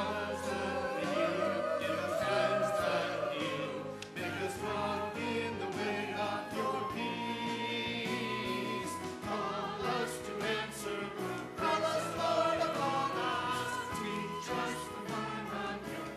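Mixed church choir singing a choral anthem, several voices in harmony, without a break.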